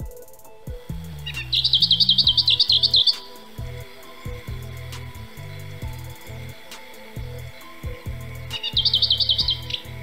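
A songbird singing a fast, high trill of rapidly repeated notes, about seven a second, twice: once about a second in for nearly two seconds, and again shortly before the end.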